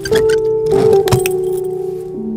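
Background score of held, steady notes that shift pitch a few times. A brief clinking or jingling and a couple of sharp clicks come about half a second to a second in.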